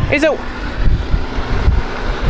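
Wind buffeting the camera's microphone: a loud, fluttering low rumble with a hiss over it.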